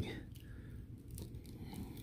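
Faint hand-handling noise of a plastic action figure being bent at the elbow joint, with a few light clicks and rubs of plastic.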